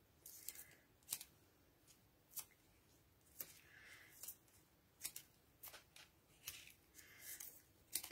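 Faint, sharp clicks at irregular spacing, about a dozen, with a few soft rustles: small craft scissors snipping 1 mm foam mounting tape, and the pieces being handled and pressed onto card.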